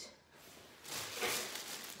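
Thin plastic bag rustling and crinkling as it is picked up, a noisy rustle of about a second starting near the middle.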